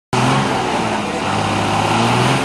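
A bus engine running loudly and steadily, a low drone with a wash of noise over it, as the bus works through deep mud.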